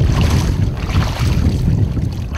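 Wind buffeting the microphone aboard a small boat at sea: a loud, uneven low rumble.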